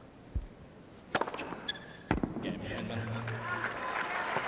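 Tennis ball struck hard by a racket on a serve, a sharp crack, followed about a second later by a second sharp ball impact; a soft low thud comes shortly before, and crowd noise rises after the second hit.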